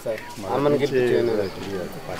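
Speech: a man talking in conversation, untranscribed.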